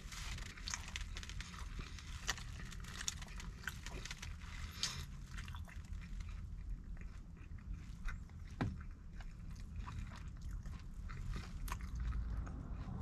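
A person chewing and biting into a slice of pizza close to the microphone: irregular small crunches and clicks, over a low steady background rumble.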